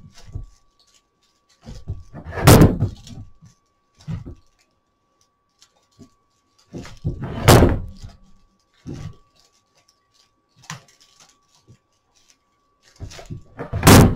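Cord being wrapped around the handle of a broomcorn whisk broom. There are three loud handling bouts about five seconds apart, one per wrap, with softer knocks between them. A faint steady tone sits underneath.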